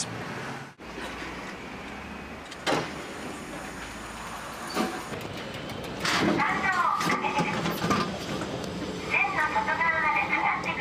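Steady low hum of city traffic, with a few faint clicks. People's voices come in from about six seconds in.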